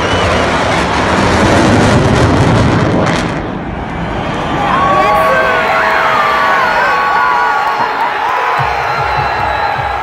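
Military jets flying over with a loud, deep roar that cuts off after about three seconds. Then a big stadium crowd cheers, with several fans' long yells standing out above it.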